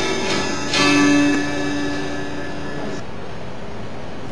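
A live worship band ends a song: a final chord, guitar audible just before it, is struck about a second in and left ringing. It cuts off abruptly about three seconds in, leaving a steady hiss.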